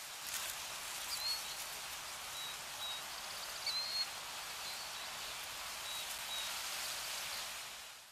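Outdoor ambience: a steady hiss with brief, high bird chirps scattered through it, fading out near the end.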